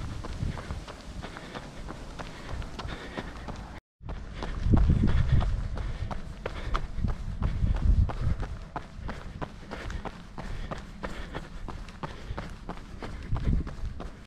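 Running footsteps on asphalt, a steady stride of about three footfalls a second, over a low rumble. The sound drops out for a moment about four seconds in.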